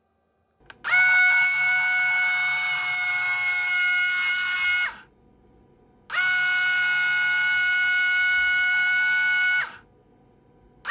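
A brand-new, not yet run-in JK Hawk 7 slot car motor spun up to speed at 12 volts twice with a steady high whine. Each run lasts about four seconds before the motor is braked and the whine drops away quickly.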